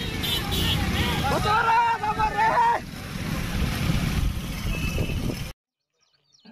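A long, drawn-out shouted slogan call from the riders, over the steady low rumble of many motorcycles riding together. The sound cuts off abruptly near the end.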